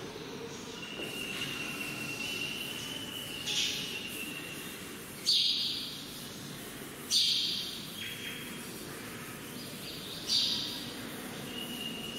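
Chalkboard duster wiping chalk off a board in four strokes, each a sharp swish that fades quickly, a couple of seconds apart. A thin, steady high tone sounds faintly between the strokes.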